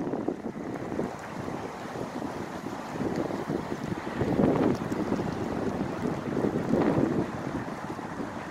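Wind buffeting a microphone: an uneven rushing rumble that swells in gusts about three, four and a half and seven seconds in.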